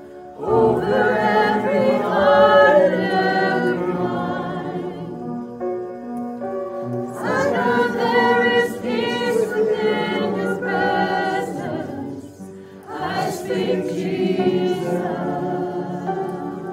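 Several women's voices singing a worship song together in three long phrases, with short breaks between them.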